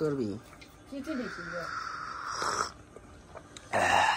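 A long breathy blow across a glass of hot milky tea to cool it, then a loud slurping sip of the tea near the end.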